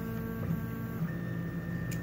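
3D printer's stepper motors whining as the printer homes toward its inductive proximity sensor. The tones shift to new pitches about half a second in and again about a second in.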